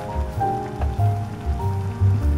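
Background piano music, over the rushing, bubbling sound of water at a rolling boil in a pot.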